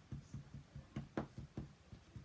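Faint, irregular light taps and clicks as a Versamark ink pad is dabbed onto a large rubber stamp mounted on a clear acrylic block, with one sharper tap about a second in.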